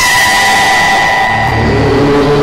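TV news headlines sting: a loud whoosh with high held tones that starts suddenly, with musical notes coming in about a second and a half in.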